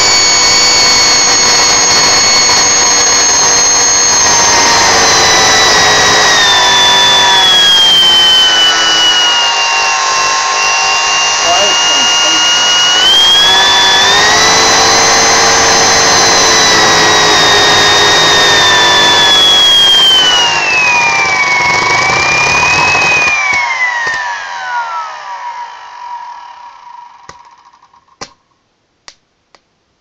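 Overvolted vacuum cleaner universal motor, fed through a variac straight to its brushes, running at very high speed with a loud high whine while its brushes spark heavily; the pitch sags and climbs again as the speed changes. About three-quarters through, the power drops out and the motor spins down with a falling whine, ending in a few sharp clicks. The motor is being driven to burnout and is left smoking and smelling of burnt windings.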